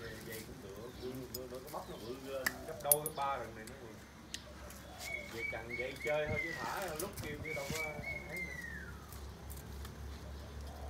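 Aluminium bonsai wire clinking and rustling as it is wound by hand around a tree branch, with a couple of sharp metallic clicks about three seconds in.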